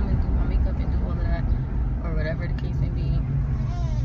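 Steady low road and engine rumble inside a moving car's cabin, with a few faint snatches of voice over it.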